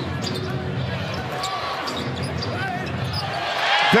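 Basketball arena crowd noise during live play, a steady hum of many voices, with a basketball being dribbled on the hardwood court.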